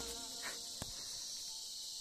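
A steady, high-pitched drone from a chorus of insects, with one faint click a little under a second in.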